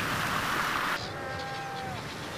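Surf washing over the rocks. About a second in it gives way to a quieter colony ambience with a long, held bleating call from brown fur seals.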